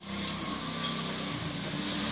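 Small motorcycle engine running steadily as the bike approaches; the sound starts abruptly.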